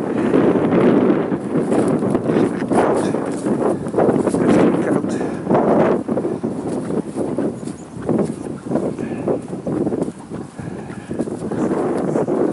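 Wind buffeting the microphone of a handheld camera outdoors, coming in uneven gusts that ease off a little around the middle and come back near the end.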